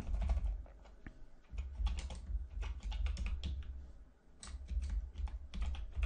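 Typing on a computer keyboard: irregular runs of keystrokes with a couple of short pauses, as a line of text is typed and corrected.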